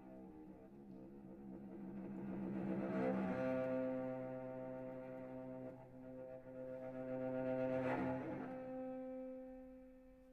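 Solo cello playing long, sustained bowed notes that swell louder about three seconds in and again near eight seconds, then fade away.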